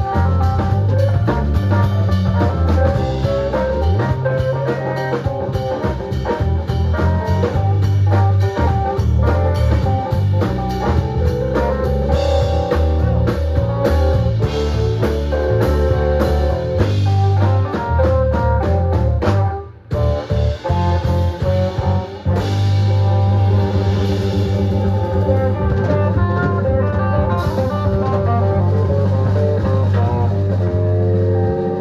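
Live blues band playing an instrumental: electric guitars, electric keyboard and drum kit over a steady bass line. About twenty seconds in the band stops dead for a moment, then comes straight back in.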